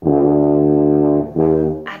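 A euphonium playing two low sustained notes: a long held note, then a shorter second note just over a second in.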